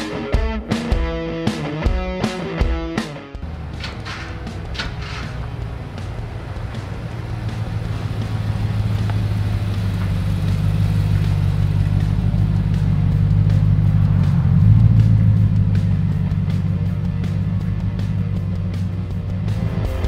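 Nissan Y62 Patrol's 5.6-litre V8 running steadily with its stock intake, a deep rumble that builds slowly to its loudest about three-quarters of the way through and then eases off slightly. Music plays over the first three seconds or so.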